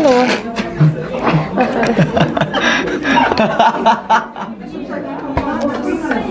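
People talking and laughing together.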